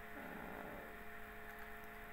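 Steady electrical hum, a few thin constant tones over faint room noise, in a pause between words.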